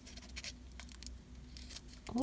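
Faint rustling and light scratching of a small paper doll dress as fingers fold it and thread its tab through a slit.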